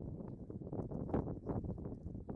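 Wind buffeting the microphone: an uneven, gusty low rumble with irregular short spikes.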